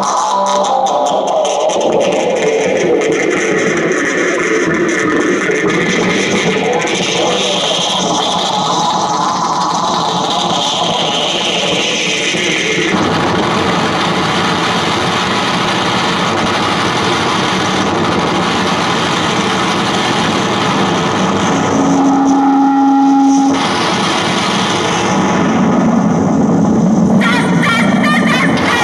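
Improvised noise music: a distorted electric guitar run through effects pedals, a dense wash of noise with a sweep that rises and falls in pitch over about ten seconds before the texture changes abruptly. A brief steady held tone sounds about three quarters of the way through.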